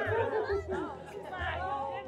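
Several people talking at once, their voices overlapping in a jumble of chatter with no one voice standing out.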